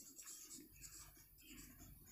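Faint, scratchy strokes of a marker pen writing on a whiteboard, a series of short scrapes as each letter is drawn.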